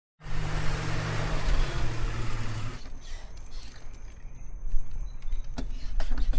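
Inserted car sound effect: loud vehicle noise with a low engine hum for about two and a half seconds that stops abruptly. Quieter mechanical noise follows, with a faint high whine and a few clicks near the end.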